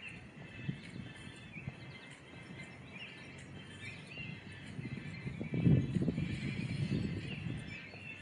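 Outdoor ambience of small birds chirping and calling in short, scattered notes. A louder low rumble comes in about five and a half seconds in and lasts a couple of seconds.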